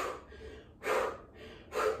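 A woman breathing hard from exertion while holding an abdominal crunch: one short, breathy gasp just under a second in and another near the end, with no voice.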